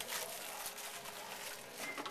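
Quiet room tone with faint rustling of a foil trading-card pack and cards being handled.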